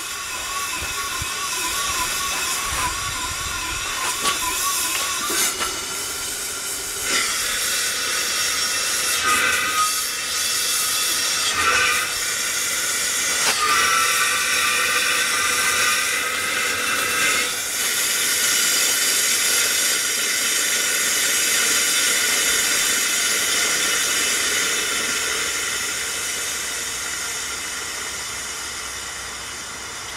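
Steam hissing steadily from a long-idle upright steam engine, with a wavering whistle-like tone in the first five seconds and a louder stretch in the middle before it eases off. The engine does not run: its eccentric has moved, so steam is admitted to both sides of the piston at the wrong time.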